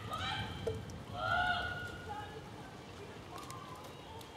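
Distant, indistinct voices calling out, loudest about a second in, over a steady low background noise.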